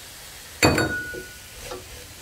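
A single clink against the stainless steel cooking pot about half a second in, leaving a brief ringing tone, over the low steady sizzle of vegetables frying in the pot.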